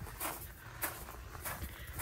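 Footsteps crunching on a gravel path, about three steps at an even walking pace.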